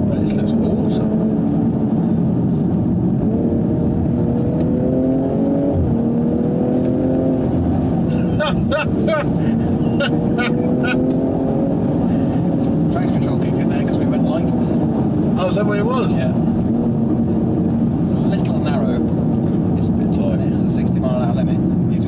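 BMW M240i's B58 turbocharged straight-six heard from inside the cabin under way, its revs climbing and dropping several times as the car accelerates and eases off, with a sudden drop near six seconds, over steady tyre and road noise.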